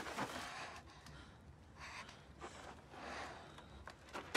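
Faint breathing: a few soft gasping breaths from a person winded after a sword sparring bout.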